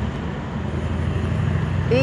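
Road traffic: a motor vehicle's engine running with a steady low rumble. It dips briefly at first, then builds again.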